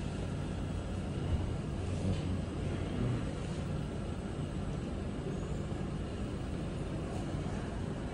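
Steady low background rumble, with no distinct event standing out.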